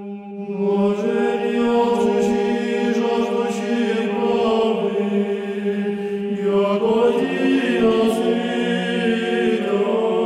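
Choral chant music: voices holding a steady low drone while the upper parts move slowly between chords, changing about every three to four seconds.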